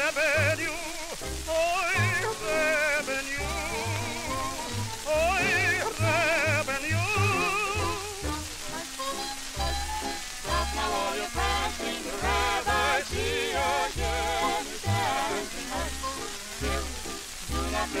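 A 1940s orchestra recording of a Yiddish folk song played from a 78 rpm shellac disc. Melody lines with heavy vibrato run over a regular bass beat, and the notes change faster about halfway through, all under the record's steady surface hiss.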